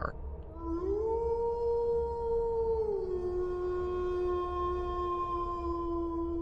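A single long howl that glides up at the start, holds one pitch, then drops to a lower note about halfway through and holds it.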